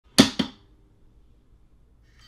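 Lid of a Lockly Smart Safe, a steel-alloy biometric safe, pushed shut: two sharp clacks about a fifth of a second apart as it snaps closed, then only a faint low hum.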